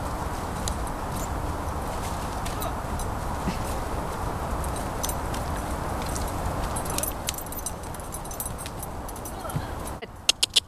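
Wind rumbling on the microphone, with the muffled hoofbeats of a piebald pony cantering on grass and the jingle of its tack; the clicks grow more frequent from about seven seconds in as it comes closer.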